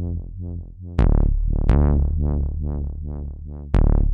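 Waldorf Microwave XTK wavetable synthesizer playing a fast run of short, plucky notes, about four a second, over a deep bass. Sharp percussive hits come in about a second in, again just under two seconds in, and near the end.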